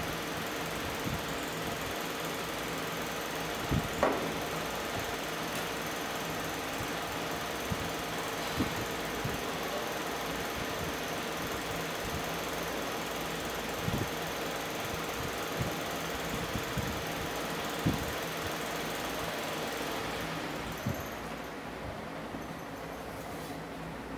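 Large caged electric fan running with a steady whir and a faint hum, with a few soft clicks now and then.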